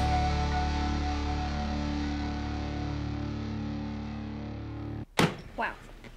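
A distorted electric guitar chord from a rock band, held and slowly fading out at the end of the song. It cuts off suddenly about five seconds in and is followed by one sharp knock, like a laptop lid being shut.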